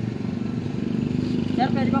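A motorcycle engine idling steadily, with a man's voice near the end.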